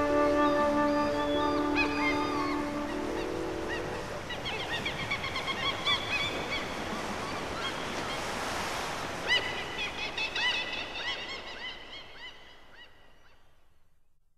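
Calm background music: held chords for the first few seconds, then a wash of surf-like noise with many short high chirps over it, fading out towards the end.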